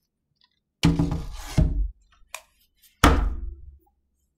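Wooden thunks and knocks of a stretched canvas being set back onto an easel: a sharp knock with a heavy low thud about a second in, then a second knock about three seconds in, each ringing briefly.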